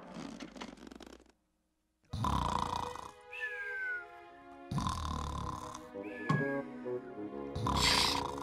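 Cartoon walrus snoring: a rasping snore followed by a thin whistle that falls in pitch, twice, with a third snore starting near the end.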